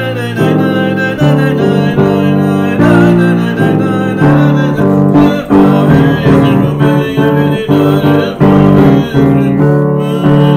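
Piano playing a medley of Purim tunes: full chords struck about once a second with a melody line above them.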